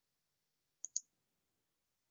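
Two quick, faint clicks of a computer mouse button, a little under a second in, advancing a presentation slide, against otherwise near silence.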